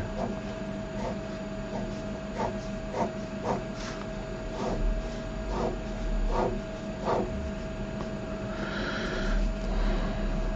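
Pen drawing lines on paper: a series of short scratchy strokes as a table grid is ruled, over a steady faint hum.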